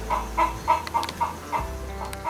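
A chicken clucking repeatedly in short, evenly spaced clucks, about three or four a second.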